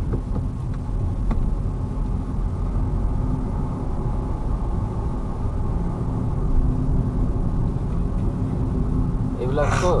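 A car driving, heard from inside its cabin: a steady low rumble of engine and tyre noise. A voice speaks briefly near the end.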